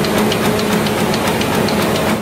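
Printing press running: a loud, steady mechanical clatter over a low hum.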